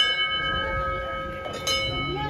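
Large hanging brass temple bell rung by hand, ringing on with several clear steady tones. It is struck again about one and a half seconds in.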